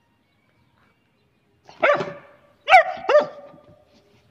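German Shepherd puppy barking three times: one bark about two seconds in, then two more in quick succession near the end.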